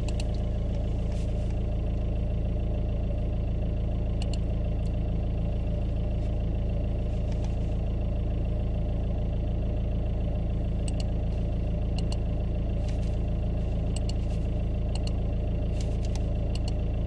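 VW 1.9 TDI PD four-cylinder diesel idling steadily, heard from inside the car, with a few faint clicks.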